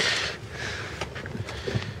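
Felt underlay and carpet being laid back by hand into a car's footwell, rustling and brushing softly, with a short hissing rush at the start and a few small clicks.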